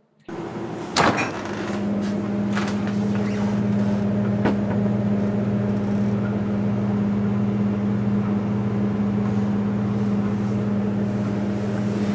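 Refrigerator running with a steady low hum. There is a sharp knock about a second in and a few fainter clicks.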